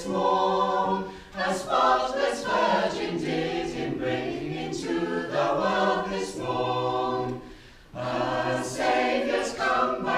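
Choir singing a Christmas carol a cappella in long held notes, with a short break between phrases about seven and a half seconds in.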